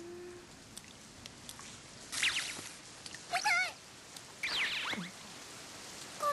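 High, squeaky cartoon-creature voice of Mokona from Tsubasa: a falling squeal about two seconds in, a quick warbling cry about a second later, then another falling squeal.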